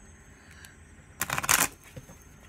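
A deck of tarot-reading cards being shuffled in the hands: a quick, dense run of card flutter about a second in, lasting about half a second.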